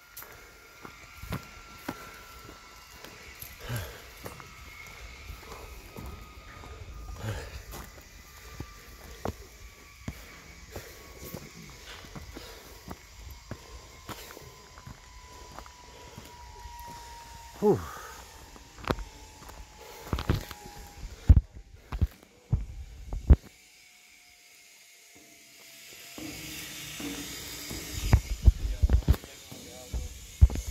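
Footsteps and handling knocks as a person walks along a trail, with a few louder thumps about two-thirds through. A faint high whine falls slowly in pitch underneath.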